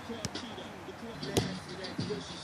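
A volleyball being hit by a player during a rally: one sharp smack about one and a half seconds in, over background voices.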